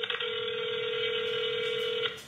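Phone ringback tone heard over the phone's speaker while an outgoing call rings: one steady electronic tone about two seconds long that cuts off sharply.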